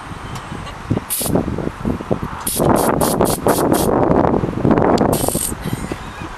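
Aerosol cans of silly string spraying in short hissing bursts: one about a second in, a rapid run of about six in the middle, and a longer spray near the end. Loud rustling and scuffling of movement runs underneath.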